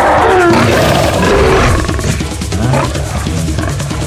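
A lion's roar, loudest and roughest in the first two seconds, trailing off into shorter growls, laid over a music score.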